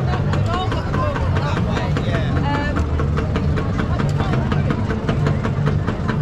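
Motor scooter engines idling with a steady low rumble, with voices talking in the background.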